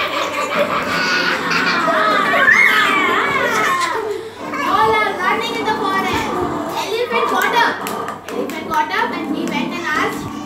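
A group of young children laughing and chattering excitedly, many voices overlapping.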